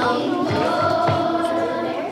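A group of children singing together, holding long notes.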